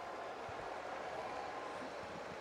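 Steady faint background noise with a faint hum: the room tone of the broadcast during a pause in the dialogue.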